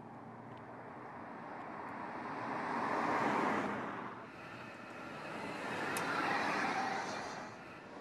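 The Audi A7 h-tron, a fuel-cell electric car driven by electric motors, passing by with mostly tyre and wind noise. The noise swells to a peak about three seconds in and fades, then a second pass-by swells and fades around six seconds.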